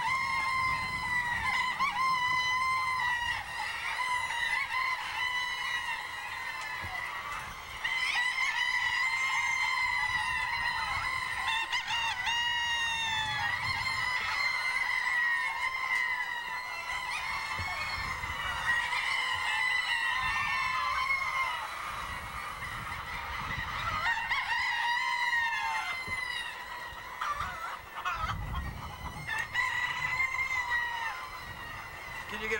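A large flock of hens clucking and calling without pause, many voices overlapping, with louder rising-and-falling calls standing out now and then.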